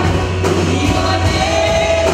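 Live worship band playing a song, a woman singing lead into a microphone over guitars and a steady bass, holding a long note near the end.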